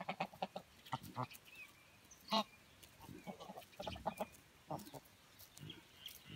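A flock of domestic geese grazing, giving soft, scattered short calls, the clearest a little past two seconds in. Between the calls come faint quick clicks as they pluck grass.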